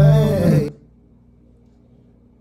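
A man's drawn-out vocal groan over the song's music, both cutting off suddenly under a second in, leaving only a faint low hum.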